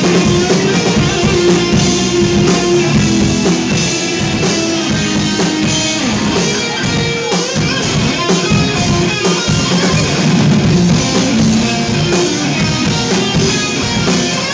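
Hard rock band playing live: electric guitars, bass guitar and a drum kit.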